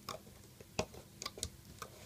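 Light, irregular clicks and snaps, about five in two seconds, from a loom hook and rubber loom bands against the plastic pegs of a Rainbow Loom as the bands are looped up.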